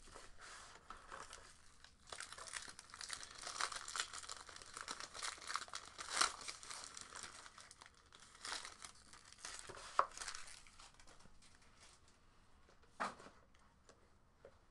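Plastic shrink-wrap and a foil pack wrapper crinkling and tearing as a sealed trading-card box is unwrapped, in faint, irregular crackles. A short knock comes about a second before the end.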